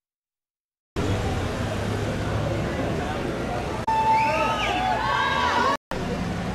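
Street noise: a vehicle engine running with a low hum under crowd chatter, starting abruptly about a second in. From about four seconds in, voices call out loudly over it, and the sound cuts out briefly just before the end.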